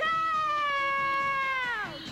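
A woman's voice holding one long high sung note, steady for about a second and a half, then sliding down in pitch and breaking off just before the two-second mark.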